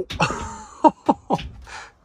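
A man's startled groan and laughter, with three short falling cries in quick succession near the middle.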